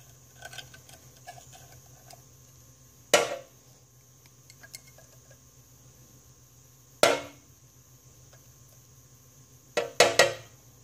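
Sharp knocks of a hard object on a hard surface, three of them about four seconds apart, the last one doubled, each with a short ring. Faint small clicks come in the first couple of seconds.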